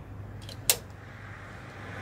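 A single sharp click from handling the trailer's metal breakaway cable, with a couple of faint clicks just before it, over a steady low hum.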